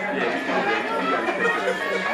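Many people talking at once in a room: indistinct, overlapping chatter.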